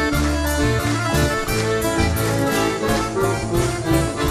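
Piano accordion playing the melody in an instrumental break between sung verses, over a band keeping a steady beat with a bass line underneath.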